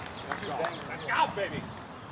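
Faint voices in the background, short calls that slide up and down in pitch, over steady outdoor hiss.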